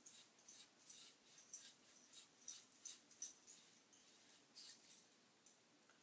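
Faint, hissy scratching of a paintbrush's bristles dabbed and swept lightly across a painted metal pizza pan, in short quick strokes about three a second, with a brief pause a little past halfway.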